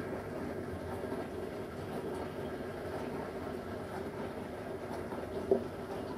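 Steady low mechanical rumble with a faint hum. One short sound comes about five and a half seconds in.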